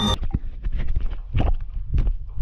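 A music track cuts off abruptly, then irregular knocks and bumps of a camera being handled and moved about.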